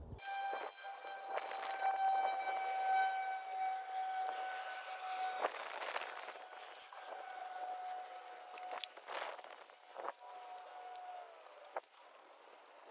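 A steady machine whine with overtones, dipping in pitch near the end, with a faint high tone slowly falling in pitch through the middle. Landscape fabric rustles and a few short clicks sound as the fabric is pulled and pinned over a metal raised bed.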